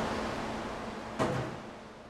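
Steady machine-shop background noise with a faint low hum, fading out, broken by one short knock about a second in.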